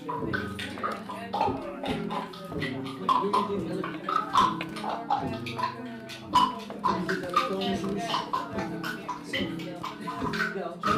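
Live-coded electronic music: a busy, stuttering stream of short chopped sample fragments and clicks over low sustained tones that keep breaking off.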